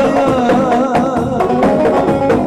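Kurdish halay dance music played live by a wedding band: a wavering, ornamented melody line over a steady drum beat.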